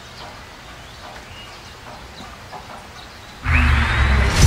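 A faint background with scattered short chirps. About three and a half seconds in, a loud cinematic transition sound effect starts suddenly: a deep rumbling boom with a rising sweep on top.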